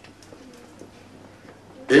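A pause in a man's amplified speech: faint room sound with a few faint low tones in the first second, then his voice comes back loudly right at the end.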